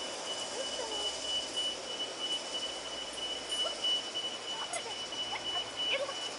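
Outdoor ambience: a thin, steady high-pitched tone over a constant hiss, with a few brief chirp-like calls near the start and again a few seconds in.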